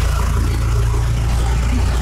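A van's engine running very close by as the van creeps past in a narrow alley, a loud steady low drone.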